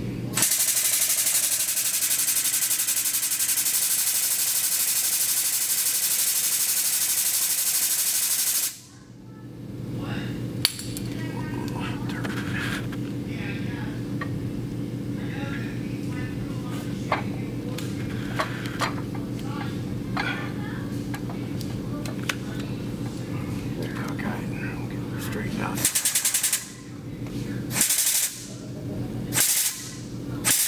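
Hydraulic shop press forcing the bearing keeper onto a rear axle shaft. A loud, rapid, rattling hiss from the press's pump runs for about nine seconds, then cuts off. A steady low hum follows, with scattered sharp metal ticks as the ring is pressed down, and a few short bursts of the pump come again near the end.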